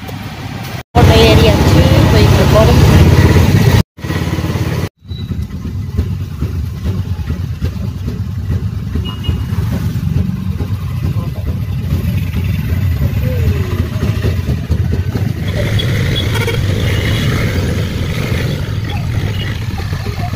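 Small auto-rickshaw engine running and road noise heard from inside the moving auto-rickshaw, loudest in the first few seconds and steadier afterwards.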